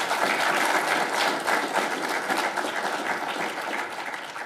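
An audience applauding, many hands clapping together at a steady strength that eases slightly near the end.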